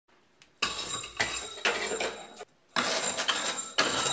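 A metal slinky walking down wooden block steps, its coils clinking and rattling with a clatter each time it lands on a step. The sound breaks off briefly about two and a half seconds in, then starts again.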